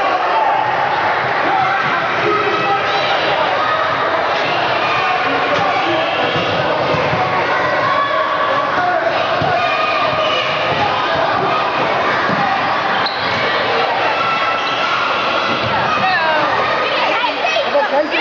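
A basketball bouncing on a hardwood gym floor as it is dribbled, with steady chatter and calling from many spectators throughout.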